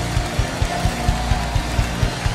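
Praise-and-worship band music in an instrumental stretch between sung lines, with a steady low beat about four times a second.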